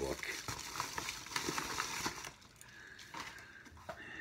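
Packaging crinkling and rustling, with many small clicks, as a Blu-ray steelbook is unpacked from its shipping box; the handling dies down about two seconds in.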